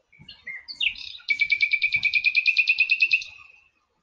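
A bird singing: a few short high chirps and a rising note, then a rapid, even trill of about eleven notes a second lasting about two seconds before it fades out.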